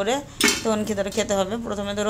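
A sharp metallic clink about half a second in, as a kitchen knife is set down on a stainless steel plate, with a woman's voice around it.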